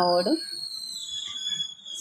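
A woman's voice trails off, then a high, thin whistling tone holds and slowly falls in pitch for over a second.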